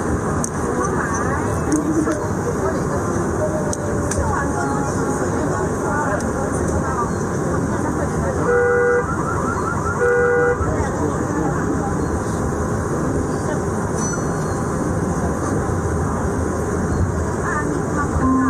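A busy, steady din of voices and traffic-like noise, with two short horn toots, one about eight and a half seconds in and another at about ten seconds.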